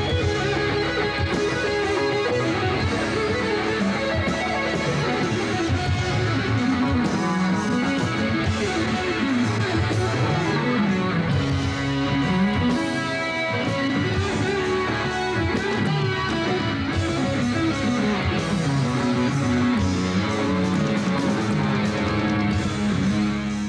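Electric guitar solo played live in a rock concert: a continuous line of fast melodic runs that rise and fall, at a steady, loud level.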